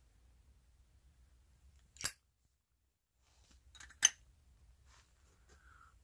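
Two sharp metallic clicks about two seconds apart, the second louder, from a lighter being worked while lighting a tobacco pipe.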